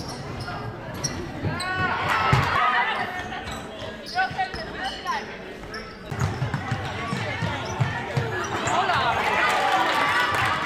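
Basketball being dribbled and shot on a wooden court, with short sharp ball strikes throughout and sneakers squeaking on the floor, in a large sports hall. Players' and spectators' voices come and go, busiest about two seconds in and near the end.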